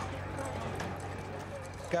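Indistinct background voices with footsteps and light clatter on pavement at an emergency scene.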